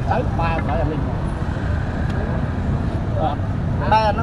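Steady low rumble of city street traffic, with a few short words of a man's voice at the start and shortly before the end.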